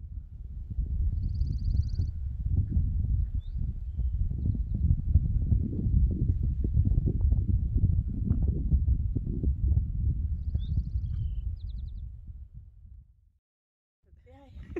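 Wind buffeting the microphone in uneven gusts, a dense low rumble. Faint bird chirps and short trills come through twice, about a second in and again near the end.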